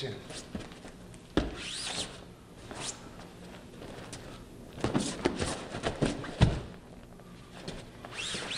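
Feet thudding and shoes squeaking on a foam grappling mat as two men run through a jab into a takedown. A sharp thud comes early, and a cluster of thuds comes later, the heaviest as a body lands on the mat.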